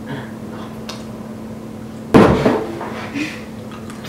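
A single sudden loud thump about two seconds in, over a steady low hum.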